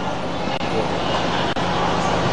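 Steady background noise with a faint low hum from the open microphone of a live remote news feed, heard while the link carries no speech.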